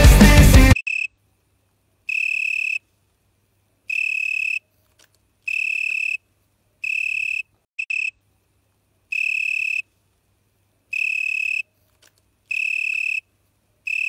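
Rock music cuts off suddenly less than a second in. A frog then calls over and over, each call a steady high trill under a second long, repeated about every one and a half seconds.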